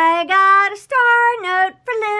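A woman's voice singing a short run of held notes that step up and down in pitch, with two brief breaks between phrases.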